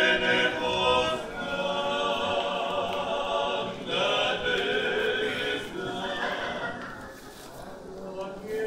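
A choir singing, several voices holding long notes, growing quieter near the end.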